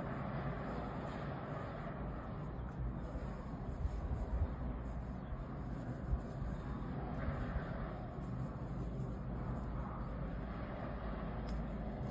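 Steady low background hum and hiss, with a few faint, brief rustles from hands working yarn with a crochet hook.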